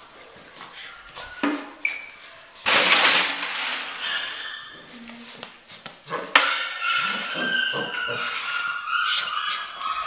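Puppy play with a rag and a can: a burst of rattling and rustling about three seconds in, a sharp knock a little after six seconds, then high, thin whining.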